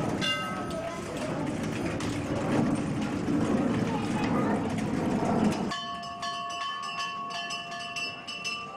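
A dense, rumbling hubbub of noise and voices cuts off abruptly near the end and gives way to bell-like tones ringing, struck over and over in a steady rhythm.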